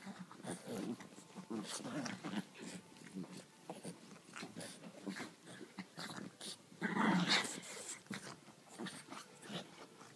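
A French bulldog and a griffon growling as they play-fight, in irregular bursts, with a louder burst about seven seconds in.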